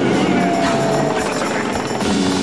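Loud arena crowd cheering and shouting over the boxer's entrance music, a dense steady roar.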